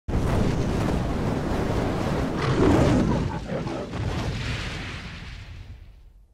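Intro sound effect for a logo reveal: a dense, noisy rumble that starts abruptly, swells to its loudest between two and a half and three seconds in, then fades away over the last couple of seconds.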